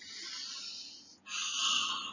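A man sniffing in deeply through his nose for about a second, then breathing out with a breathy, whispered "ahh" through an open mouth, as if smelling something nice.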